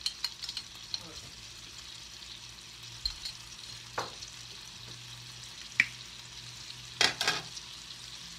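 Chicken tenderloins frying in butter and garlic in a cast iron skillet, a steady sizzle. A few sharp clicks and taps cut in, the loudest cluster about seven seconds in.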